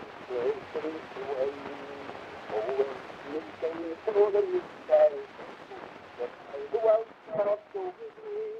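Early phonograph cylinder recording playing back: a thin voice in short phrases under a steady hiss of surface noise.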